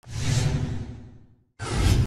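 Two whoosh sound effects: the first swells up quickly and fades away over about a second and a half. After a brief silence, a second whoosh rises sharply near the end.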